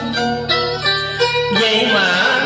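Instrumental passage of a tân cổ backing track: a plucked string instrument playing a run of quick, separate notes.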